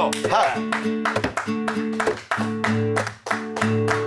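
Guitar strummed in a steady rhythm, about four strokes a second, working through a repeating chord pattern.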